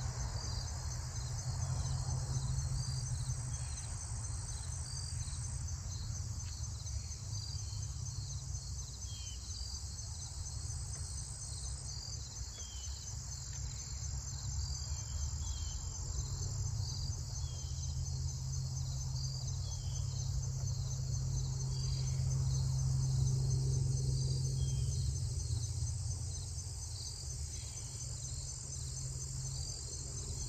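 A steady chorus of field insects, a high pulsing trill that keeps repeating, over a low rumble that swells a little past the middle.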